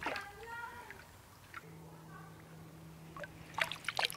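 River water gurgling into a plastic water-purifier container held under the surface, with short glugging blips as air escapes. Near the end it splashes louder as the container is lifted out and water pours off it.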